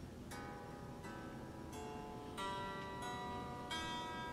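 DIY Telecaster-style kit guitar played quietly as single picked notes: about six notes, roughly one every two-thirds of a second, each left ringing. The strings are raised on a toothpick under the nut and cardboard strips under the bridge to clear a bent neck.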